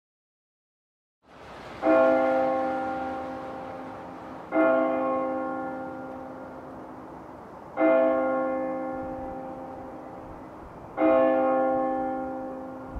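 A large bell struck four times, about three seconds apart, each stroke ringing on and fading slowly.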